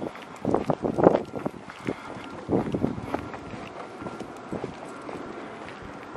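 Running footfalls on asphalt with wind buffeting the microphone. A cluster of footfalls comes in the first three seconds, then the sound settles to mostly steady wind.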